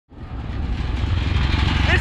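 Motorcycle engine of a Filipino motorcycle-and-sidecar tricycle running steadily while under way, with road noise; the sound fades in at the start. A man's voice begins right at the end.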